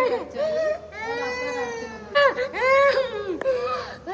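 A small boy wailing, about four long drawn-out cries in a row with short breaths between them.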